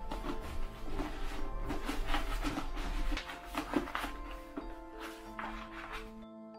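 A sheet of lining paper crinkling and rustling as it is lowered and pressed by hand into a wooden table well, louder around the middle, over background music.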